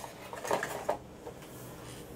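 Clear plastic packaging being lifted and set down on a table: a few light plastic clicks and rustles in the first second.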